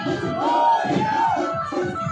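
A crowd of men shouting together, with one long shout that rises and falls about half a second in. Music with held steady tones plays underneath.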